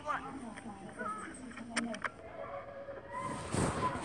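Faint voices from the soundtrack of a video being played, with two short clicks about two seconds in and a broad rush of noise that starts about three seconds in.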